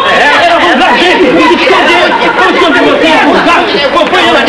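Several men's voices shouting and talking over one another at once, a loud, unbroken tangle of overlapping speech.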